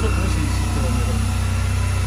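Honda Silver Wing 400 maxiscooter's parallel-twin engine idling steadily, a constant low hum with a fine regular pulse.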